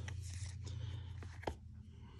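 Trading cards being handled and laid down on a cloth play mat: faint rubbing and sliding of card stock, with one short tap about one and a half seconds in.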